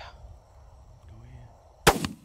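A single rifle shot near the end, sudden and far louder than the faint night background, with a short decaying tail after it.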